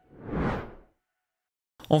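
A single whoosh sound effect from a logo animation, swelling and fading within about a second, followed by silence; a man's voice begins just before the end.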